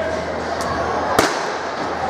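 A starter's pistol fires once about a second in, a single sharp crack that signals the start of a sprint race, over a background murmur of voices.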